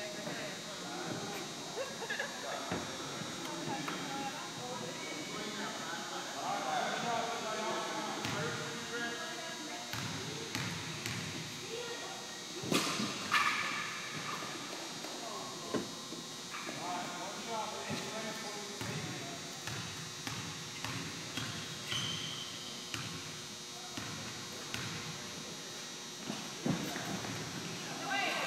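Basketball gym during a youth game: indistinct voices of players and spectators echo in the hall, and a basketball bounces on the hardwood floor now and then, the loudest knock about 13 seconds in.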